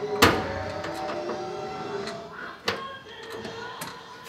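Sharp knocks and clicks from hand work on the wiring behind a VW bus's metal dashboard: a loud one just after the start, another about two and a half seconds later and a fainter one near the end, over quiet background music.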